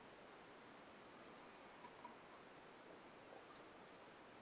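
Near silence: steady faint room hiss, with two faint ticks about two seconds in.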